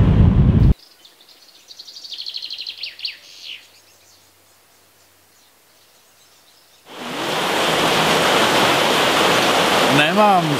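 Wind buffeting the microphone cuts off abruptly under a second in. A songbird then sings a quick trill of rapidly repeated high notes that grows louder and ends in a few falling notes. From about seven seconds in a steady rushing noise takes over.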